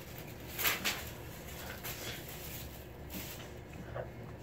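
Paper rustling and crinkling as a sheet of paper and a strip chain are handled, in a few short bursts, the loudest a little under a second in.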